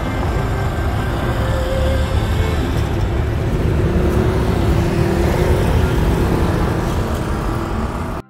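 Road traffic at a busy city intersection: cars and a bus driving past, giving a steady, loud rumble of engines and tyres.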